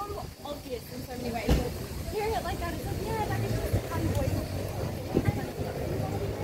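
Voices of passers-by talking, none of it close or clear enough to make out. Two brief thumps come through, one about a second and a half in and one near the end.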